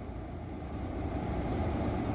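Steady low rumble of a car's interior.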